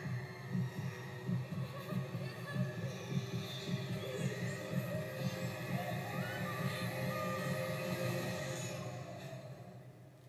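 Film soundtrack playing from a screen and picked up by the phone's microphone in the room: a rapid low pulsing under eerie sustained music, with faint voice sounds, fading out near the end.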